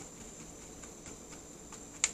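Faint handling sounds as thick oatmeal is tipped from a bowl onto a plate: a few soft ticks over quiet room noise.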